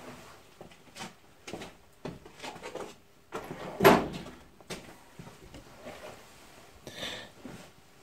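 Rummaging among workshop tools for a pozi screwdriver: scattered knocks, clicks and rattles, the loudest just before four seconds in, with a brief scrape near seven seconds.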